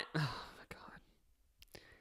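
A soft, breathy "uh" from a man trailing off into near silence, with a couple of faint clicks.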